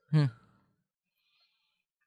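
A person's short murmured "hmm" with falling pitch, lasting about a third of a second, then near silence.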